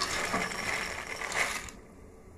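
Dry fusilli pasta poured out of a white bowl into a pot of boiling water: a dense rattle of the pieces sliding out, strongest just before it stops about a second and a half in.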